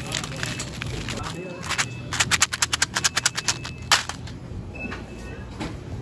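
A rapid run of sharp plastic crinkles and clicks, about eight to ten a second for some two seconds, from a hand rummaging through wrapped candy in a basket. The loudest click comes near the end of the run.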